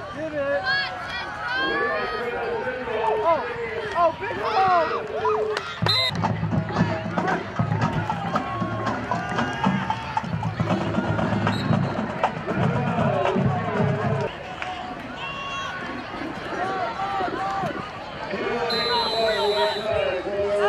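Football crowd voices and shouting throughout. From about six to fourteen seconds in, music with heavy drumming plays under the voices.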